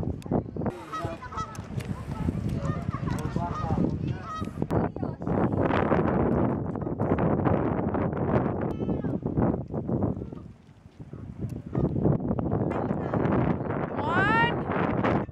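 Goose-like honking calls, on and off, over a steady noisy outdoor background.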